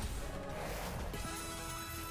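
Online slot game's music playing, with a held chiming jingle coming in a little past halfway as a win is tallied.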